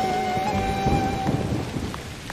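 Thunderstorm sound effect: thunder rumbling and rain falling under background music, whose single held note fades out about one and a half seconds in.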